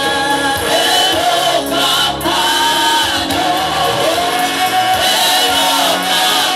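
Gospel worship song sung by a group of voices with musical backing, the notes long-held and gliding between pitches.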